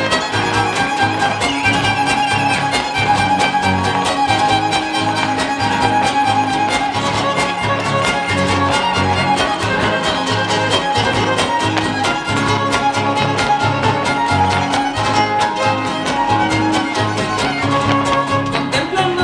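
Son huasteco (huapango) music: a violin plays a lively instrumental passage over the rhythmic strumming of the jarana huasteca and huapanguera, with no singing.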